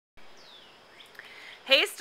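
Faint outdoor background hiss with a single thin, falling bird chirp in the first second. Speech begins near the end.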